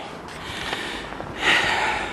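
A woman breathing hard while walking uphill, with one loud, noisy breath about one and a half seconds in. The climb is hard work for her because she is seven months pregnant and has chronic asthma.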